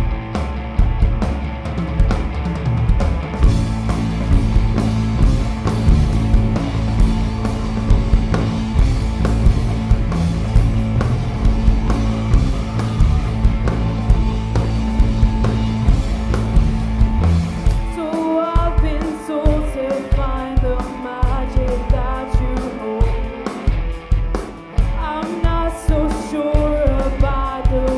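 A live band plays loud electric music with bass guitar and drums. About eighteen seconds in the thick low end drops away and a voice starts singing over the band.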